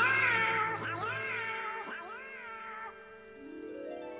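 Donald Duck's squawking cartoon voice calling out loudly with a wavering, warbling pitch. The call repeats about three times, each fainter than the last, over soft sustained music.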